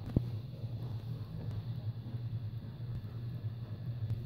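A single sharp click just after the start as a plastic toy horse jump is handled and set up, over a steady low hum.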